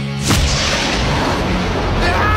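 A sudden boom, a cartoon explosion sound effect, about a third of a second in, followed by a noisy rush. It cuts across soundtrack music that is playing at the start.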